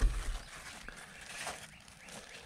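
Cucumber leaves and vines rustling as a hand pushes through them, with a short low thump on the microphone at the start.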